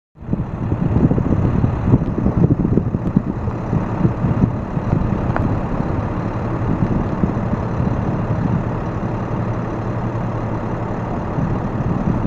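Crop-duster airplane's engine droning steadily as it comes in low to land, heard across the airfield. A gusty low rumble is heavier over the first few seconds.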